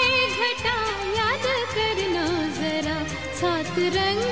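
Old Hindi film song: a wavering, ornamented singing line without clear words, over a steady percussion rhythm and orchestral backing.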